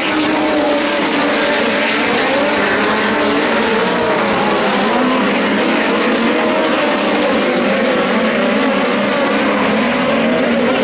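A field of USAC midget race cars running at racing speed, several engines heard at once, their pitch wavering up and down as the cars go around the track.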